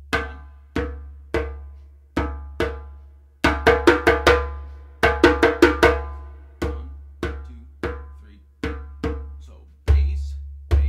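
A synthetic-head djembe played by hand, looping the announced bass–tone–slap–tone cycle. First come evenly spaced open tones. From about a third of the way in there are two quick flurries of sharper, brighter slaps. Then the tones return, and a deep bass stroke lands at the very end.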